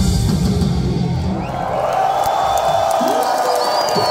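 A live metal band, with drums, bass and guitars, plays its final bars for about the first second and a half and then stops. A crowd cheering and yelling takes over, with a high whistle near the end.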